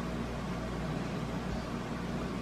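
Steady low hum and hiss of room background noise, with no distinct events standing out.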